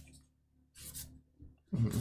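Magic: The Gathering cards being flipped through by hand, with a faint, brief slide of cards about a second in against near-quiet room tone.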